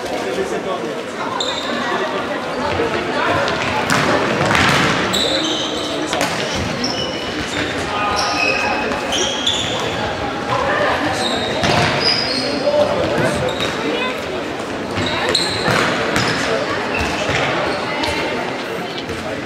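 Indoor football match in an echoing sports hall: the ball being kicked and bouncing off the floor several times, sports shoes squeaking on the hall floor, and indistinct shouts from players and chatter from spectators throughout.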